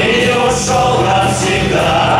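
Live rock band playing: electric guitars, bass guitar and keyboard under a sustained, choir-like vocal line.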